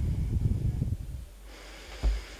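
Low rumbling noise picked up by a microphone, fading out about a second in, then faint room tone.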